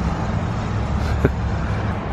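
Steady low rumble of vehicle traffic from a crowded parking lot, with one sharp click about a second and a quarter in.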